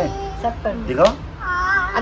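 Two high-pitched wordless cries with sliding, wavering pitch: a short rising one about a second in, then a longer wavering one near the end.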